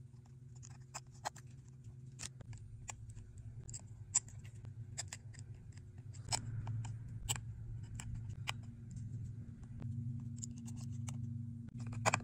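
Scattered small sharp clicks and taps as an iPhone logic board is seated in a new housing and its parts are pressed and worked with a metal tool, over a steady low hum.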